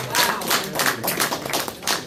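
A church congregation applauding, many people clapping their hands in quick, irregular, overlapping claps.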